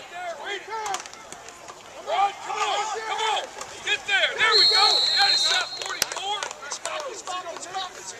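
Several voices shouting across a football field while a play runs. About halfway through, a referee's whistle blows once for about a second to end the play.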